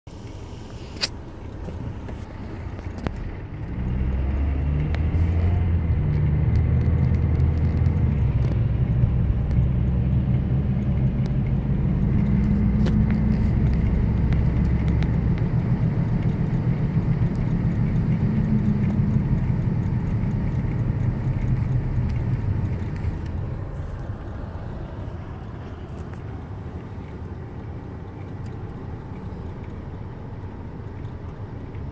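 Car engine and road noise heard from inside the cabin. It is quiet with a couple of clicks at first, then grows louder about four seconds in as the car pulls away, with a steady low engine hum. It eases off a little after twenty seconds.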